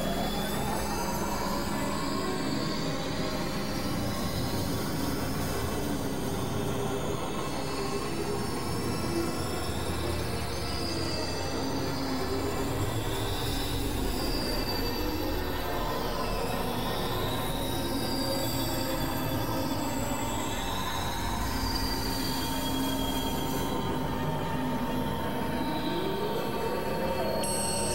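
Experimental electronic drone and noise music: a dense, steady wash of synthesized sound with a held middle tone and wavering high whistling tones over it.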